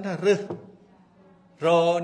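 Man giving a speech: a few words, a pause of about a second, then one drawn-out syllable near the end.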